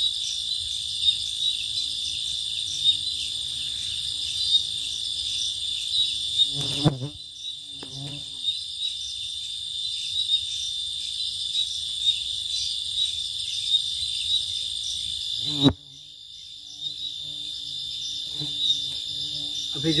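Crickets chirping steadily at night, a continuous high trill with fine ticking in it. Two brief clicks, each followed by a dip in level, come about seven seconds in and again near sixteen seconds.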